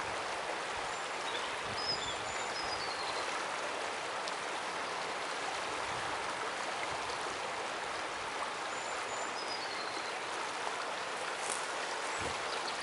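Small river flowing, a steady rush of water over a shallow riffle.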